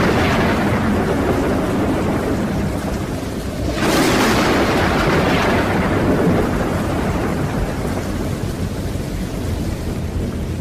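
Thunderstorm: rain falling steadily under rolling thunder, with a fresh thunderclap about four seconds in that slowly fades away.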